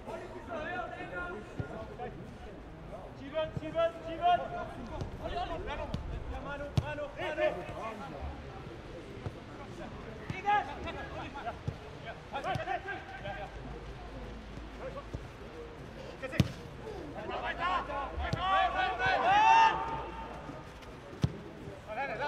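Footballers calling and shouting to each other on the pitch in bursts, loudest near the end, with the occasional sharp thud of the ball being kicked.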